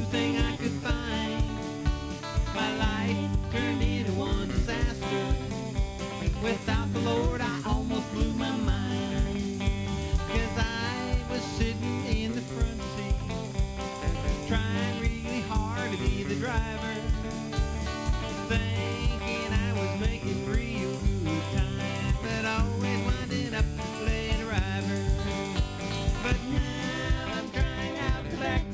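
A small live band playing a country gospel song on electric guitar, electric bass and drum kit, with a steady beat.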